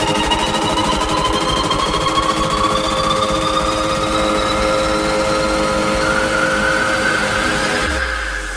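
Electronic dance music build-up: a synth tone rising steadily in pitch over a fast, rattling pulse and held notes.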